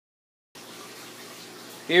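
Silence for about half a second, then a faint steady whir from a homemade stir plate built from computer parts, spinning a beaker of water on a low setting. A man starts speaking near the end.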